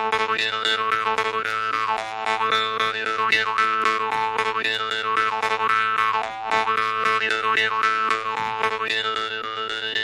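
Jew's harp played solo. A steady drone note sounds throughout, with a dance-tune melody picked out in shifting overtones above it and the reed plucked in a quick, even rhythm.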